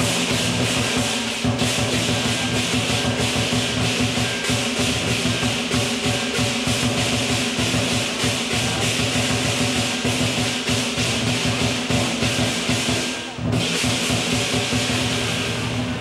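Southern lion dance percussion: a drum beaten in fast strokes under continuous clashing cymbals and a ringing gong, with a brief dip about three-quarters of the way through.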